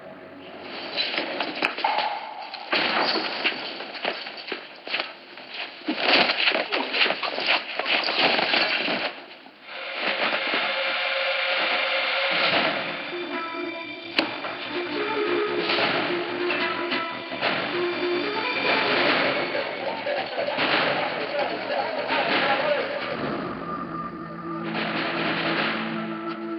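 Film soundtrack: a dense run of rapid knocks and crashes for about the first nine seconds, then dramatic score music with sustained held notes for the rest.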